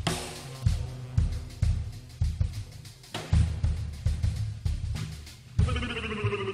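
Live jazz with a drum kit to the fore: bass drum, snare and cymbal hits over a low bass line, about two beats a second. Near the end a choir starts chanting.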